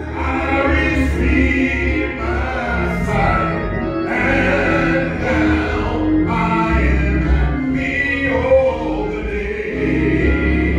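Gospel singing by several voices, with instrumental accompaniment holding low bass notes that change every second or two.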